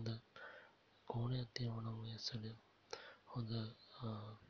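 Speech: a low-pitched voice talking quietly in short phrases, with a few short clicks between them.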